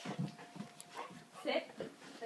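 A dog whining in a few short bursts.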